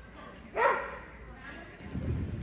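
A dog barks once, loudly, about half a second in, the bark ringing on briefly in the large hall.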